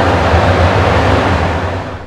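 Road traffic along a city street, a steady loud noise with a low rumble, heard through a clip-on wireless microphone; it dies down near the end.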